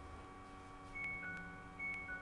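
Two short two-note chimes about a second apart, each a bright higher note falling to a lower one, over a low steady hum.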